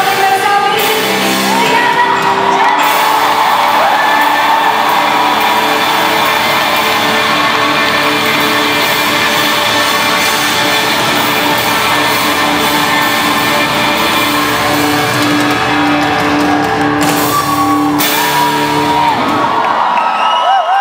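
Live pop band playing the song's outro in a large hall, with held notes and sustained chords, while the audience shouts, whoops and sings along, heard from within the crowd.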